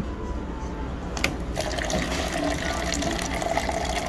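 Water running from a soda fountain dispenser into a paper cup. After a click a little over a second in, a steady stream of water runs into the cup.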